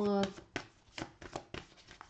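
Lenormand oracle cards being shuffled and handled: a quick run of light card snaps and taps, about half a dozen over a second and a half.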